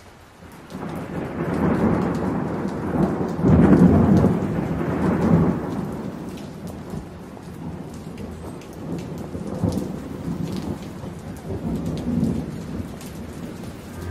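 Rain falling steadily with a roll of thunder that builds to its loudest about four seconds in, then rumbles on more softly with a couple of smaller swells.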